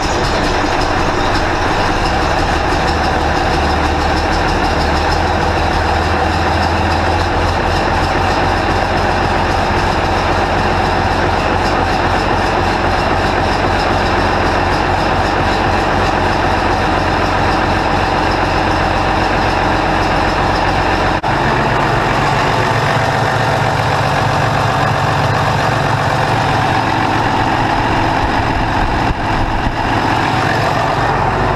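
Case 2090 tractor's six-cylinder diesel engine running steadily just after starting, now that air has been bled out of its newly replaced fuel filters. Its low note changes abruptly about two-thirds of the way through.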